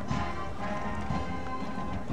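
Military band music playing, with a low beat about once a second, over horses' hooves clip-clopping at a walk.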